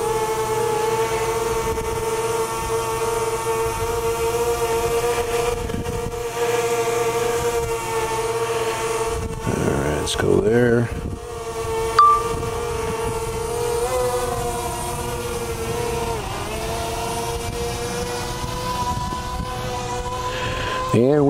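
DJI Mavic Mini's propellers whining steadily in flight close by, the pitch shifting slightly now and then as the throttle changes. A short sharp high blip comes about twelve seconds in.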